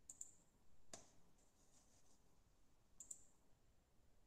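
Faint computer mouse clicks in near silence: a double click at the start, a single click about a second in, and another double click about three seconds in.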